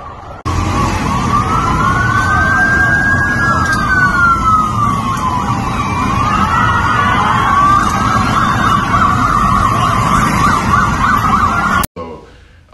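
Several police motorcycle sirens wailing at once, their pitches rising and falling out of step with each other over a low rumble. It starts suddenly about half a second in and cuts off abruptly just before the end.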